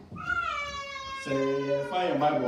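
A high-pitched voice holds one long note that slides slowly downward. About a second in, a lower male voice joins on a steady pitch.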